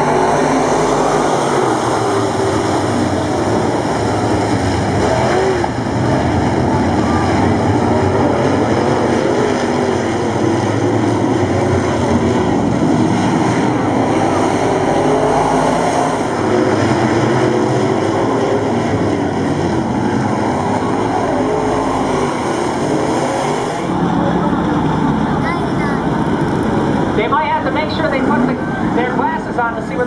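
A pack of dirt late model stock cars racing together on a dirt oval, their engines running hard in a loud, continuous roar that thins somewhat near the end.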